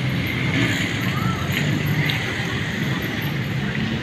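Steady street traffic noise from passing motorbikes and cars, with faint voices in the background.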